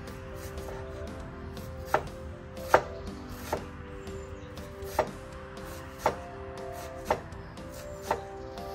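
Kitchen knife chopping an onion finely on a wooden cutting board: six sharp knocks of the blade on the board, roughly one a second, starting about two seconds in.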